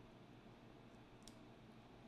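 Near silence: faint room tone, with one small high click about a second in.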